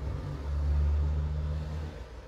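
A low, steady rumble that swells about half a second in and eases off near the end.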